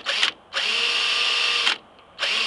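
DeWalt 18-volt cordless drill running on 12 volts from a car battery through a modified battery pack, its motor whirring in two trigger pulls: a short burst right at the start, then a steady run of a little over a second.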